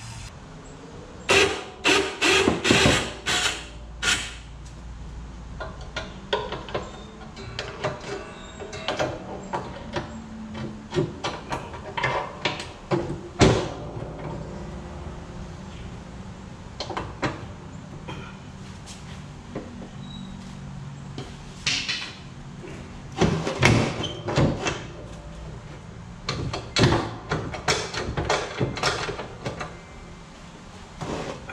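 Hand tools clanking and knocking on the steel mount of an ATV snow plow while working a pin that was frozen solid. The hits are irregular, with clusters of loud sharp knocks about a second in and again in the last third.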